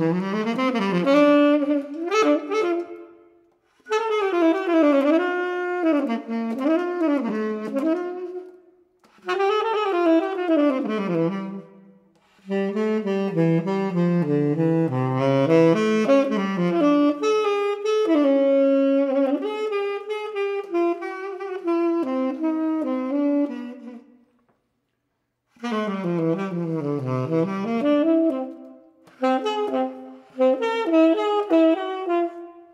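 Unaccompanied tenor saxophone improvising in separate melodic phrases with short silences between them. The longest phrase runs for about twelve seconds in the middle, and there is a longer pause a few seconds before the end.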